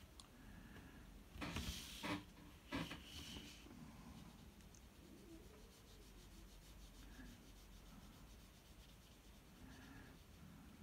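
Paper rubbing and sliding on the drawing surface in two short bursts, about one and a half and three seconds in. Between them and after them, only faint rubbing from the brush pen and hand on the sheet.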